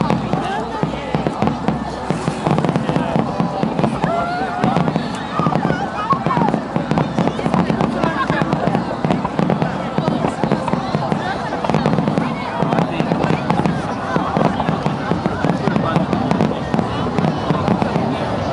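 Aerial firework shells bursting in a dense, continuous run of bangs and crackles, with people's voices mixed in, mostly in the first few seconds.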